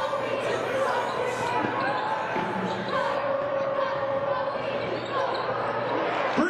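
The live game sound of a college basketball game in a large arena: a basketball dribbling on the hardwood court, with voices and crowd murmur echoing in the hall.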